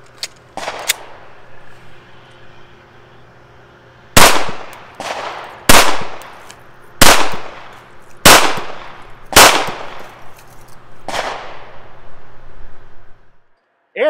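FN 509 9mm semi-automatic pistol firing six shots at a slow, steady pace, about one every second and a half. Each shot trails off in a short echo, and the last is a little quieter.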